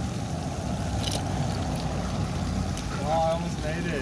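Steady rushing outdoor background noise with no clear single source, and a brief voice sound near the end.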